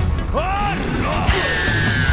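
Power metal band playing live: electric guitars, keyboard and drums. There are short swooping pitch bends in the first second, then a cymbal-washed hit a little over a second in and a long high note sliding steadily down.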